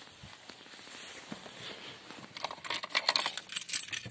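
Faint rustling, then car keys jangling and clicking in quick succession through the second half, as they are handled before the engine is cranked.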